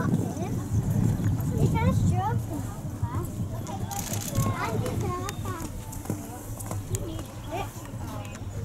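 Indistinct chatter of onlookers standing at an arena rail, with many short, high chirps scattered through it, busiest in the first half.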